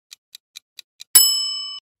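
Quiz countdown-timer sound effect: quick clock-like ticking, about four or five ticks a second, then a single bright bell ding a little past halfway that rings for just over half a second and cuts off, signalling that time is up.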